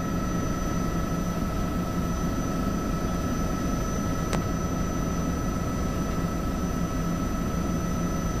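Bell 206B III helicopter in powered flight, heard inside the cockpit: the steady noise of its Allison 250 turboshaft engine, main transmission and rotor, with constant whine tones running through it. A faint click about four seconds in.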